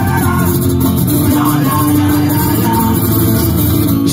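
Live rock music from a band, two acoustic guitars strummed hard with drums underneath, loud and steady.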